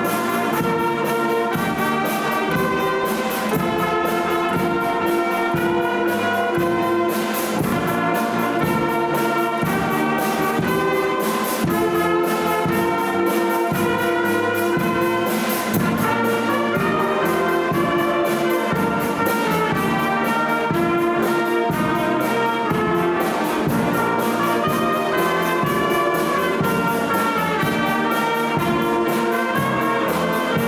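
Youth wind band of flutes, clarinets, saxophones, trumpets and tuba playing a piece together, with a steady percussion beat under the melody.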